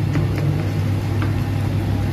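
Steady low mechanical hum of kitchen machinery, with a few faint ticks and pops from tomato paste frying in the pan.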